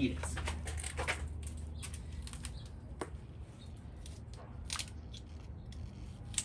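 Pruning shears snipping and gloved hands rustling among dragon fruit: a few short sharp clicks spaced out over a few seconds, over a low steady hum.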